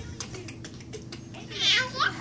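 A baby's short, high-pitched squeal of delight about one and a half seconds in, after a few faint clicks.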